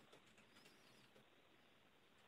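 Near silence: a pause in the conversation with only faint hiss.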